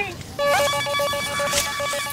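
Electronic phone ringtone, a steady trilling tone that starts about half a second in.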